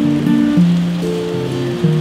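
Yamaha acoustic guitar fingerpicked, single notes picked one after another in a slow arpeggio pattern, with a steady patter of rain underneath.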